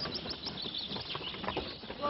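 Small birds chirping in a quick run of short, high notes over a steady background hiss.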